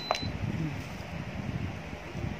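A button press on an H-Tech PSC-811 electric pressure cooker's control panel: a click and a short high beep right at the start as the pressure-time setting is stepped up by one minute, over a low background murmur.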